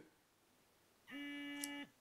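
Vibration motor in a Venture Heat heated-vest remote giving one steady buzz of just under a second, starting about a second in. The long vibration signals that the vest's heating has been switched off.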